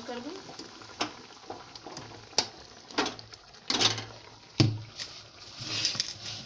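Metal spatula scraping and knocking against an aluminium kadhai while stirring a thick, sticky sesame and jaggery mixture, in irregular strokes about once a second.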